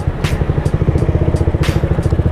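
Motorcycle engine running at low revs, a fast even pulsing, with a light tick about twice a second over it.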